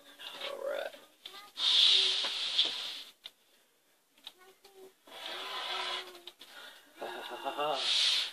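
Rotary cutter drawn along a quilting ruler through polyester fiber fill on a cutting mat, making two rasping cutting strokes, the first the louder. There is faint murmuring between them, and speech begins near the end.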